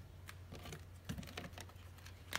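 Faint, irregular clicks and taps of a tarot deck being handled and set down on a cloth-covered table, about five light ticks in two seconds.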